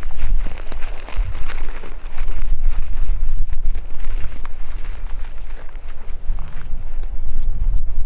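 Footsteps crunching through dry grass and brush, irregular and uneven, over a heavy low rumble on the microphone.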